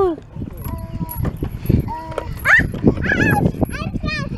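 A toddler babbling in short, separate calls, some held and some rising and falling, over rustling and handling noise from the camera.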